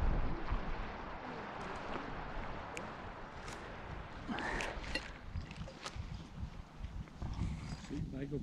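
Wind blowing on a clip-on microphone outdoors: a low rumble under a steady hiss. A brief, faint voice is heard about four and a half seconds in.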